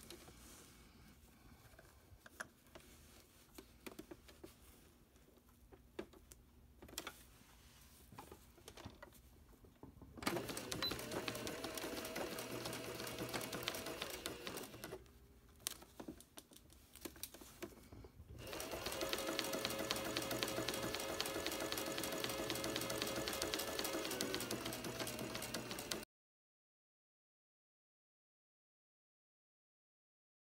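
Electric sewing machine stitching a Velcro strip onto flannel. After about ten seconds of faint clicks it runs in a rapid even rhythm for about five seconds, stops for a few seconds, then runs again for about seven seconds before the sound cuts off suddenly.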